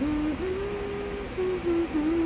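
A woman humming with closed lips: a few held notes that step up and then settle slightly lower, with short breaks between them.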